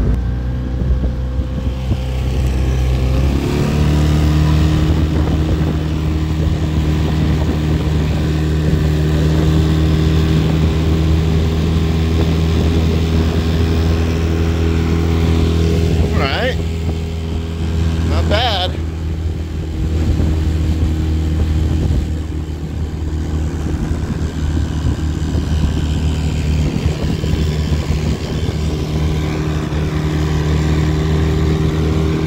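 Small Mercury outboard motor driving a jon boat at speed, a steady engine drone with water rushing past the hull. About three seconds in, the engine note steps up to a higher pitch and holds there.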